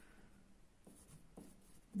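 Pencil writing a few digits on a paper worksheet: a few faint, short strokes.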